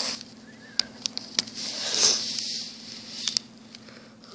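Handling noise from close up: a few sharp clicks of plastic toys and the handheld camera being moved, with a rubbing, hissy swell about halfway through.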